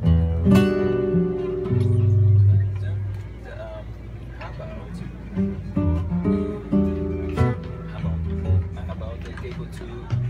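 Two nylon-string flamenco guitars playing gypsy rumba. A sharp strum comes about half a second in and low notes ring around two seconds in. Quieter picked notes follow, with another sharp strum near seven and a half seconds.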